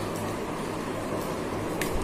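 Light handling of craft paper as it is folded over the top of a box, with a few faint clicks and a sharper one near the end, over a steady low hum like an air conditioner or fan.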